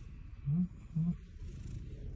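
Domestic cat purring steadily while its head is massaged, a continuous low pulsing rumble: a sign of contentment. A person gives two short low hums, about half a second and a second in.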